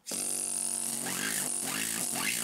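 Pneumatic stone-carving air hammer triggered and running freely, starting suddenly: a steady buzz from the hammering piston with a loud hiss of compressed air.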